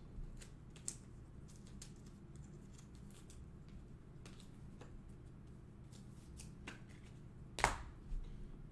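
Faint handling of trading cards on a table: scattered soft clicks and taps, with a sharper click near the end, over a low room hum.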